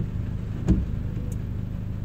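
Steady low rumble in the background, with one soft thump about two-thirds of a second in.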